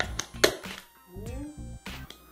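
Staple gun firing twice, once about half a second in and again near the end, driving staples through upholstery fabric into a plywood board, over background music.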